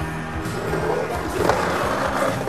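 Skateboard wheels rolling on asphalt, then a louder scrape of the trucks grinding a concrete curb about one and a half seconds in, over background music.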